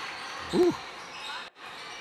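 A basketball bouncing on a gymnasium's hardwood court under the steady noise of the gym, with one short voiced 'woo' about half a second in.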